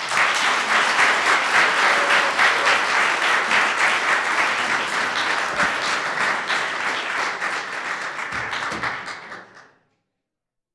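Audience applauding, strongest in the first few seconds and slowly tapering off, then fading out just before the end.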